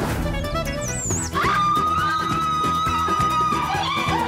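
Comedic background music score with a rhythmic accompaniment; a high note comes in about a second and a half in and is held for about two seconds.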